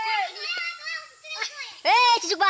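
Young voices shouting long, high-pitched calls, one after another.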